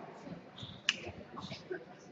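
A squash ball is struck once with a sharp crack about a second in. A brief high squeak, most likely a shoe on the court floor, comes just before it.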